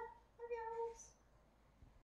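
A woman's high, sing-song voice saying "bye" twice, the second one drawn out and held level at the same high pitch.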